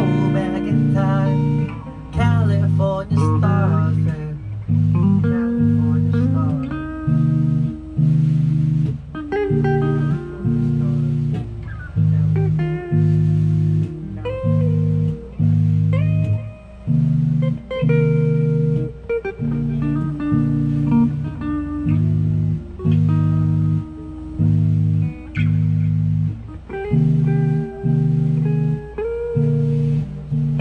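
Electric guitar and electric bass playing together: the bass holds repeated notes of about a second each while the guitar picks a melodic line above it.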